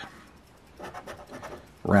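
A coin scraping the coating off a scratch-off lottery ticket: a run of faint short scratching strokes about a second in.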